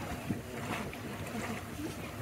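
Steady wash of water and wind on an electric tour boat under way, with no engine note.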